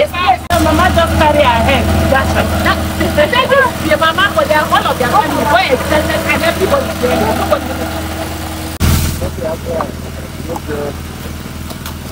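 Several women's voices talking over one another, with a steady low engine-like hum underneath. The chatter breaks off abruptly about nine seconds in, leaving the hum and a few faint scattered sounds.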